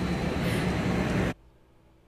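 A loud, even rushing noise with a low hum under it, which cuts off abruptly a little over a second in, leaving near silence.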